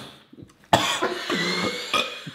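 A man coughs sharply about two-thirds of a second in, just after a sip of a soft drink, followed by a short voiced noise in the throat.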